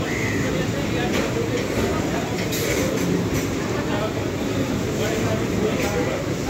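Indian Railways freight train of covered box wagons passing close by: steady rumble and clatter of steel wheels on the rails, with a few sharp clicks as wheels cross rail joints.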